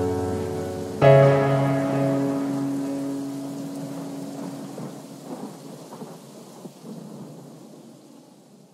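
The closing bars of a future bass track: a sustained keyboard chord struck about a second in, slowly fading out over a rain-like noise with a few soft crackles near the end.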